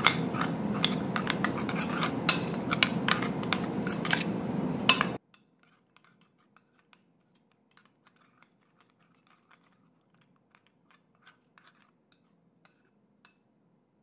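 A metal spoon scraping and clicking against a glass bowl as it stirs a thick, damp herbal paste. The sound cuts off abruptly about five seconds in, leaving near silence.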